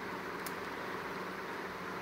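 Steady room noise, a low even hiss, with a faint click about half a second in.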